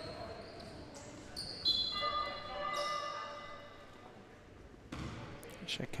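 Indoor basketball game on a hardwood court with a ball bouncing. About two seconds in, a steady high tone is held for about a second and a half as play is halted.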